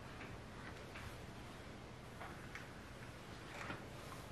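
Faint, irregular clicks and soft swishes of a ceramic flat iron clamping shut on sections of hair and gliding down through them.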